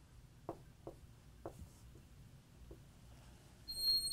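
Marker writing on a whiteboard: a few short, separate pen strokes and taps, then a brief louder sound just before the end as the writing stops.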